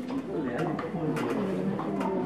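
Low, indistinct voices with a few sharp clicks.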